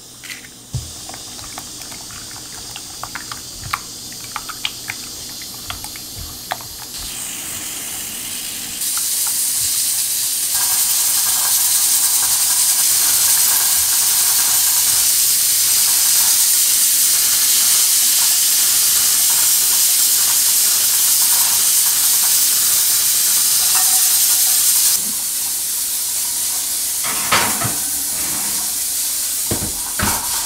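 Utensil clicks and taps in a ceramic baking dish as eggs are mixed, then a pressure cooker venting steam: a loud, steady hiss sets in about nine seconds in and drops to a quieter hiss a few seconds before the end, with a couple of knocks near the end.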